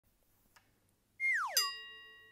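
A short sound effect about a second in: a whistle-like tone slides quickly down in pitch, then a bell-like chime rings out and slowly fades.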